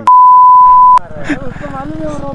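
A loud censor bleep: one steady, high pure tone lasting about a second, switched on and off abruptly in the middle of the talk to cover a spoken word.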